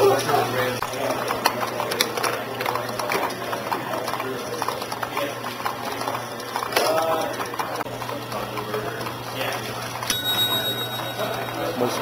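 Several small Rube Goldberg machines built from Lego, K'nex and metal construction-set parts running together off a motor-driven shaft: rapid, irregular clicking and clattering of gears and moving parts over a steady low motor hum. Voices talk in the room, and a steady high ringing tone starts near the end.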